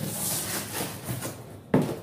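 Packaging rustling as it is handled, then one sharp knock near the end.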